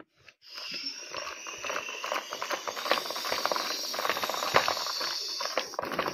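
Plastic toy playset's spinning top whirring, with a steady hiss and rapid small clicks and rattles.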